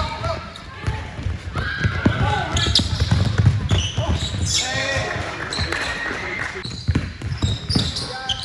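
Live basketball game sound in a gym: a basketball bouncing on the hardwood floor over players' voices.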